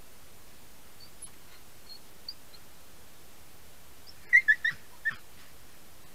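An animal giving four short, loud calls in quick succession about four seconds in, each a brief pitched yelp, preceded by a few faint high chirps.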